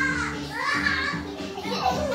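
Background music with steady held notes, with a child's voice briefly over it in the first second.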